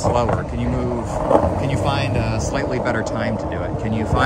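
A person talking over a steady low rumble of skateboard wheels rolling on asphalt.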